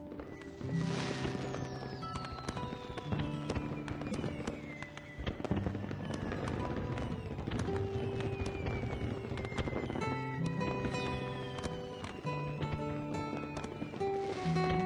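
Background music with sustained held notes over fireworks crackling and popping in many quick cracks, with several long falling whistles.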